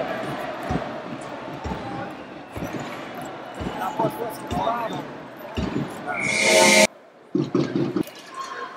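Ice hockey arena sound: crowd chatter with sharp knocks of sticks and puck on the ice and boards every second or so. Near the end a louder rising swell of noise cuts off suddenly, followed by a few more knocks.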